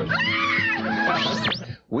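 A woman screaming with excitement, a high drawn-out shriek of surprise at winning a prize, over background music. It lasts about a second and a half and breaks off just before the announcer comes in.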